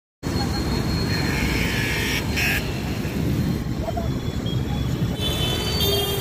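Busy street noise: chatter of many voices over traffic rumble and motorbikes.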